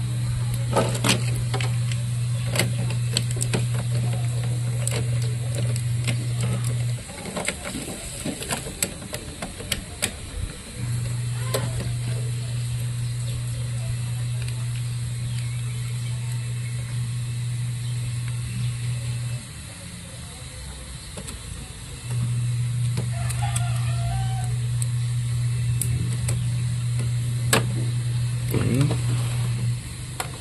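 Small plastic clicks and handling noises as ink-supply tubes and their damper are fitted onto a printer's print head. Under them is a loud, steady low hum from an unseen machine. It runs for several seconds at a time and cuts off sharply twice before starting again.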